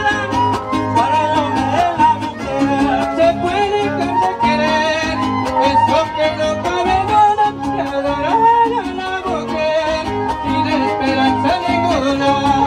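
Son huasteco (huapango) played by a trío huasteco: a violin carrying the melody in sliding, ornamented phrases over the steady strummed rhythm of the jarana and huapanguera.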